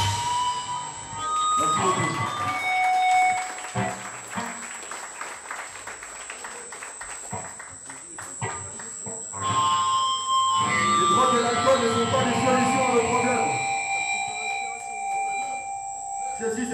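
Electric guitar amp feeding back between songs: short held squealing tones, one at a time at changing pitches, over a steady high whine from the amp. Voices talk underneath in the second half.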